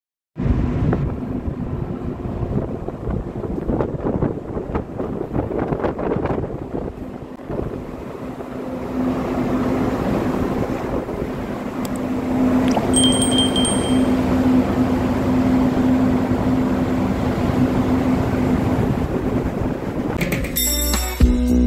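Wind buffeting the microphone on a ship's open deck over a steady low machinery hum, which stands out more clearly from about halfway on. A brief high electronic beep sounds once, past the middle.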